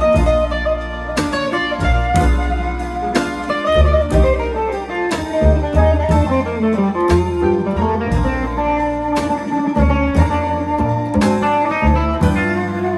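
Band music: an electric archtop guitar plays a melodic line with a descending run in the middle, over upright bass and drums.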